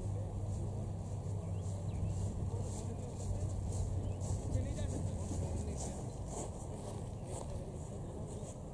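Faint, unintelligible voices of people talking at a distance, over a steady low hum, with occasional short high-pitched chirps.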